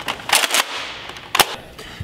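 Nerf Rival foam-ball blaster firing: a sudden loud shot about a third of a second in, with a short fading tail, then a single sharp click about a second later.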